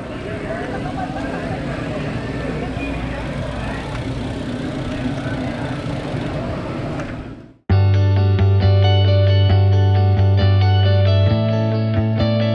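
Outdoor crowd noise with mixed voices among a large pack of cyclists setting off, cut off abruptly about three-quarters of the way in by loud guitar-led background music with steady hits.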